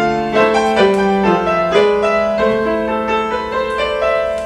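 Solo grand piano, improvised: a flowing run of notes rings on over sustained lower notes, with the pedal holding them.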